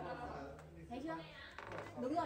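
People talking, their voices indistinct.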